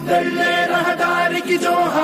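Recorded patriotic Telugu song about soldiers playing: long held sung notes that step in pitch, with no bass beat underneath.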